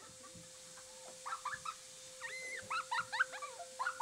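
High-pitched squeals from a girl and a woman at play, many short ones in quick succession from about a second in, over a faint steady hum.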